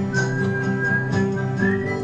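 A man whistling a melody over strummed acoustic guitars, the whistled note rising near the end, with a light percussion tick about twice a second.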